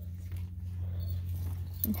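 Small dog whining and squeaking inside a moving car, over the car's steady low rumble.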